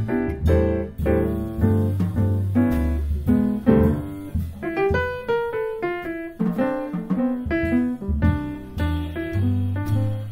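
Live jazz on acoustic grand piano: chords and single-note lines over plucked low bass notes, with a quick run of single high notes about five seconds in.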